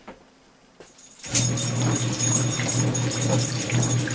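Montgomery Ward wringer washer starting up about a second in: a steady motor hum and the agitator churning the clothes in the tub of water.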